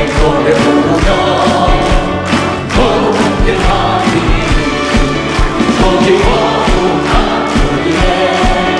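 A man sings a Korean hymn into a microphone, backed by a worship choir and a band with a steady drum beat.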